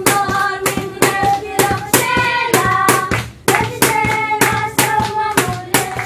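Group of children singing a worship song while clapping their hands in time, about two claps a second.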